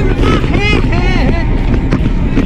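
A person's voice with a pitch that swoops up and down, over a steady low rumble of wind and rolling tyre noise from a bicycle moving on a dirt road. The voice fades out about a second and a half in.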